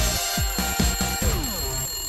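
Short upbeat TV jingle with a fast beat and a ringing alarm-clock bell over it, ending in a falling pitch sweep that trails off.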